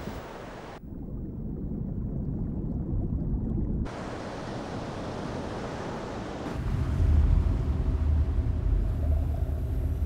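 Rumbling sea noise, a dense low rush of water with no clear rhythm. It changes abruptly several times: thinner about a second in, fuller about four seconds in, and louder from about six and a half seconds on.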